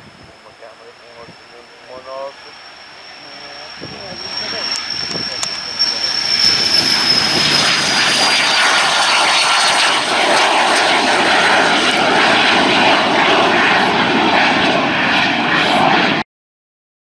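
Twin turbofan engines of a Cessna Citation CJ3 business jet at take-off power as it rolls and climbs away. The jet noise builds over the first six seconds or so, then holds loud, with a high fan whine that slowly falls in pitch.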